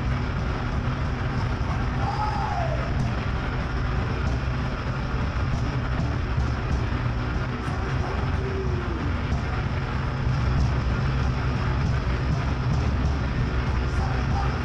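Live heavy rock band playing: distorted electric guitars, bass and drums in a dense, unbroken wall of sound with heavy bass.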